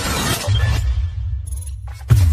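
Cinematic intro music with sound effects: a crackling, shattering noise, then a deep bass drone coming in about half a second in, dropping away just before the end.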